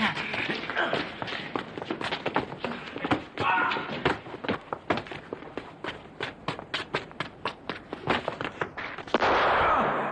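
Scuffle and chase: a dense run of thuds and quick footsteps, with a man's brief shout a few seconds in. A louder, longer burst of noise comes just before the end.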